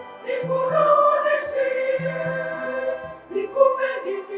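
Background music: a choir singing over an accompaniment with repeated low bass notes.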